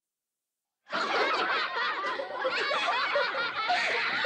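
A crowd of high cartoon voices laughing and giggling together, the plankton creatures of the United Plankton Pictures logo. It starts suddenly about a second in, after a brief silence, and goes on without a break.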